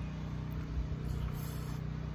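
Wind buffeting the microphone outdoors: a steady low rumble with a faint hum underneath.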